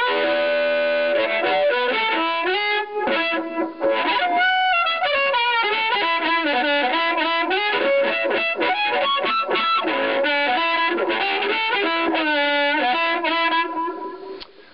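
Amplified blues harmonica played through a chopped Astatic 200 bullet mic with a Shure controlled magnetic element into a vintage Silvertone 1432 tube amp. It opens on a held chord, then moves into bent notes and quick runs, and stops near the end.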